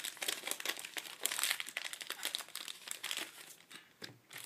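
Foil booster-pack wrapper crinkling as trading cards are pulled out of the torn pack by hand: a dense run of crackles that thins out near the end.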